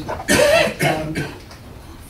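A person coughing twice in quick succession, loud and close to the microphone.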